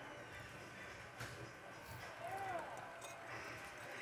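Faint stadium crowd noise from a football game, with a brief distant voice about halfway through.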